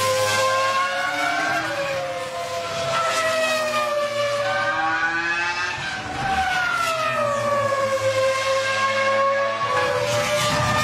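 Ferrari F2004 Formula One car's 3.0-litre V10 running at high revs on track. Its pitch climbs and falls again and again as it accelerates and brakes, with a sudden step about six seconds in.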